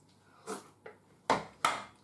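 Black plastic blender lid handled and set down on a wooden chopping board: a soft brush of noise, then two sharp knocks about a third of a second apart.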